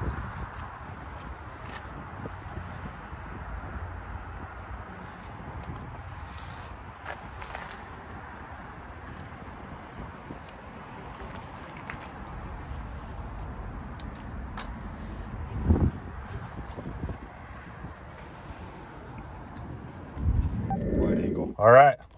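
Steady outdoor background noise with scattered light clicks and one louder knock about sixteen seconds in. A voice is heard briefly near the end.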